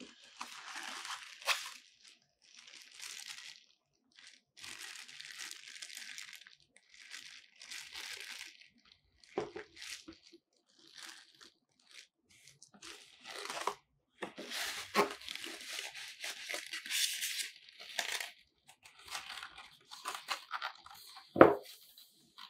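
Plastic wrapping crinkling and rustling in short bursts as bagged parts are handled and pulled out of a styrofoam-packed box, with a few knocks among them and one sharp knock, the loudest sound, near the end.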